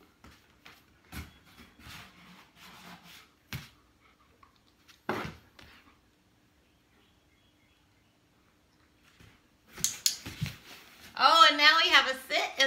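A dog shifting its feet in a small cardboard box: soft scrapes and rustles with a couple of sharper knocks, a quiet pause, then a louder scuffle as it sits down in the box. A woman laughs near the end.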